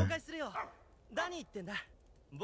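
Animated dog barking from the anime soundtrack: short high yips in two quick bursts.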